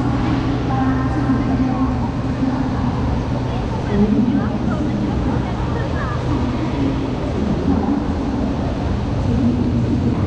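Busy high-speed-rail platform ambience: a steady low hum under the scattered voices of passengers walking past a parked train.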